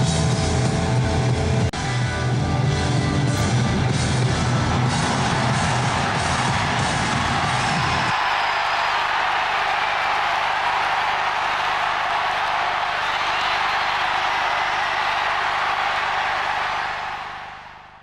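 Hard rock music with electric guitar and a steady beat. About eight seconds in, the bass and drums drop away, leaving a sustained noisy wash that fades out near the end.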